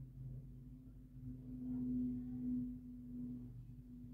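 A low, steady hum of two sustained tones, the higher one swelling about two seconds in and easing off again.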